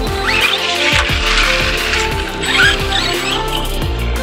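Electronic background music, with the high-pitched drive sound of an Arrma Granite 4x4 BLX brushless RC monster truck over it: two rising squeals as it accelerates, about a quarter second in and again about two and a half seconds in.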